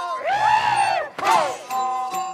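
Several Shaanxi Laoqiang opera performers shouting together in two rising-and-falling cries, the second shorter than the first. Near the end the troupe's instruments come back in with steady held notes.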